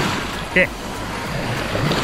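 Steady rushing wash of surf on the shore, an even noise with a low rumble under it.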